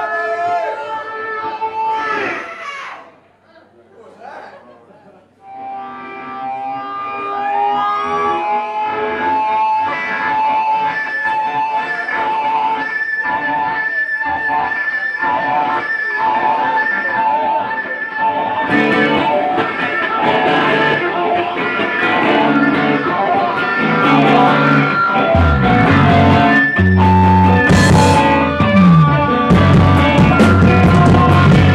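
Live rock band: an electric guitar through effects pedals holds sustained, wavering notes, dropping away briefly a few seconds in and then building again. Bass notes and drums come in about two-thirds of the way through and the full band grows louder.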